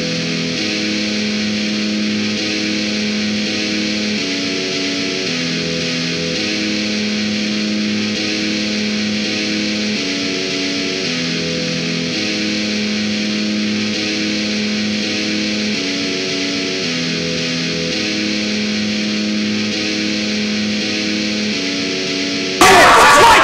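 Hard rock instrumental made in iOS GarageBand: distorted electric guitar holding sustained chords that change every second or two, without drums, at an even level.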